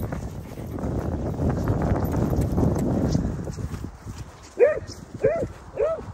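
Rhythmic thudding of running footfalls on grass, with rumble from a jostled handheld microphone, for about the first three and a half seconds. Then a dog gives three short, high yelps in the last second and a half.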